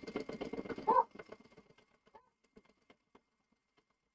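Domestic sewing machine free-motion stitching: rapid needle strokes stop about a second in. A few faint clicks follow as the machine and hoop are handled.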